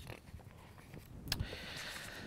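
Faint handling of a transparency sheet on an overhead projector: a soft click a little over a second in, then a quiet sliding hiss.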